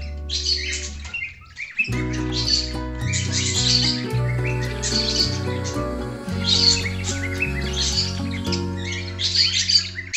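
Background music with sustained notes changing in steps, dropping out briefly about a second in, while pet birds chirp over it in repeated quick bursts.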